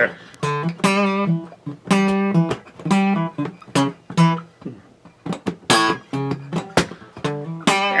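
Acoustic guitar playing a low single-note riff: separate plucked notes in a syncopated line, with a short quieter gap a little past the middle.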